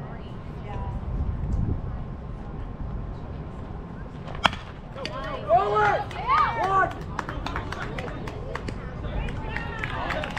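A baseball bat cracks against a pitched ball once, sharply, about four and a half seconds in. Voices then shout and cheer loudly for a couple of seconds, and scattered clapping follows near the end.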